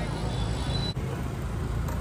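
Busy street traffic rumble, then, after a sudden change about a second in, the steady engine and road rumble of a Royal Enfield Bullet motorcycle under way.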